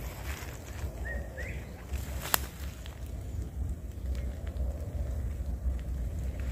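Outdoor ambience dominated by a low rumble of wind and handling on the microphone, with a brief chirp about a second in and one sharp click a little past two seconds.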